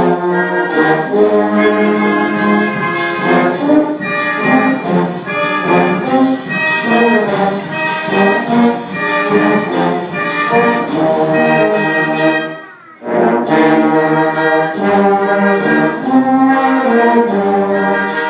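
Brass band of trumpets, trombones and tuba playing a hymn-like tune over a steady drum beat, in a reverberant hall. About two-thirds of the way through, the band stops for a moment, then comes back in.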